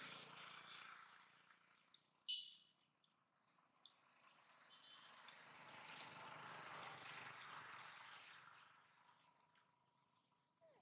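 Faint outdoor ambience: a soft rushing hiss that swells and fades twice, with a few short sharp clicks, the loudest a little over two seconds in.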